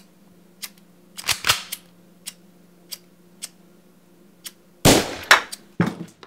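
Pistol shots: a loud pair about a second and a half in, then three rapid, louder shots with ringing tails near the end. Under them a steady ticking and a low hum.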